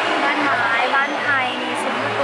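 A woman talking over a steady rushing noise.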